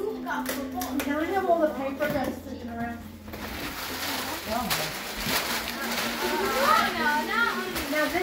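Overlapping chatter of children and adults, with paper and packaging rustling as gifts are unwrapped from about three seconds in.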